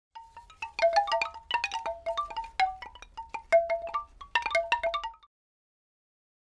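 Chimes struck in quick, uneven clusters: many bright ringing notes at a handful of pitches overlap and fade, then stop suddenly about five seconds in.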